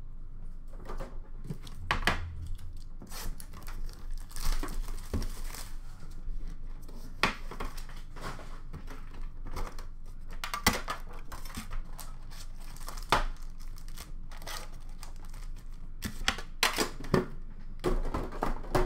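Hockey card packs and cards being handled: foil wrappers crinkling and tearing, with scattered sharp clicks as cards and a metal tin are picked up and set down.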